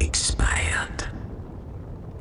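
Breathy whispered vocal sounds: a few short hissy bursts in the first second, then quieter.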